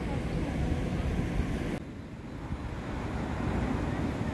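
Outdoor ambience with a steady low rumble; the hiss above it drops away abruptly a little under two seconds in, where the recording cuts.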